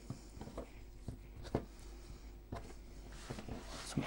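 Faint, scattered soft taps and knocks of hands working the strands of a braided yeast dough on a wooden board, over a low steady hum.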